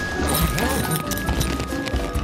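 Airport baggage carousel running, with repeated clacking as suitcases come through the flap, under background music and a murmur of voices.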